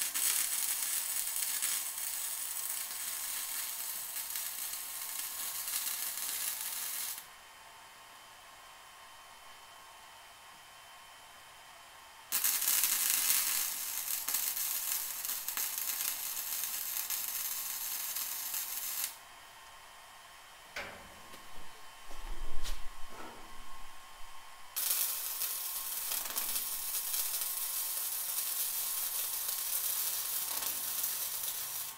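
Flux-core wire welder running three beads on steel flat bar, each a steady arc noise lasting about six or seven seconds, separated by pauses. Between the second and third beads come a few knocks and one loud thump.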